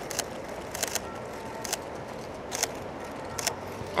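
Outdoor street ambience with a steady hum of distant traffic, broken by about five short, sharp clicks at irregular intervals.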